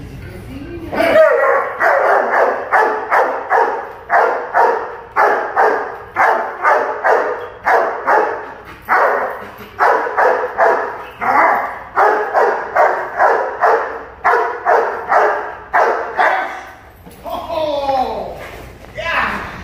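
Young German Shepherd protection dog barking over and over at an agitating decoy, about two barks a second, with the barking stopping shortly before the end.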